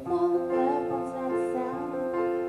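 A woman singing over sustained chords on a digital stage piano, with a chord struck right at the start.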